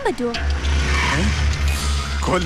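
Low, steady rumble of a motor vehicle engine, with a couple of short spoken sounds and film background music.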